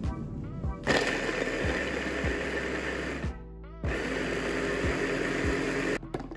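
Electric mini chopper running in two pulses, the blade whirring through chunks of red onion. The first pulse starts about a second in and lasts a little over two seconds; after a brief pause the second runs to the end.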